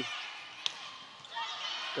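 A single sharp smack of a volleyball being struck, about two-thirds of a second in, over the faint steady murmur of the arena crowd.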